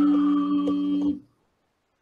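Singing bowls ringing: two steady low tones held together with a fainter higher tone above them, cutting off suddenly a little over a second in.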